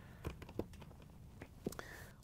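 Faint small clicks and rustles of wires being lifted and slid out of a plastic wire clip on a dishwasher's pump assembly, a few separate ticks spread over the two seconds.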